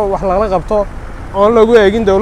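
A man speaking, with a steady low rumble of road traffic underneath.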